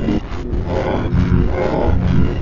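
Commercial soundtrack run through heavy audio effects. It comes out loud, low and distorted, with dense layered pitches.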